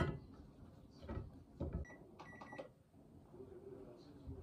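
A few soft knocks and clunks of household objects being handled, with a short run of bright clinks a little past halfway.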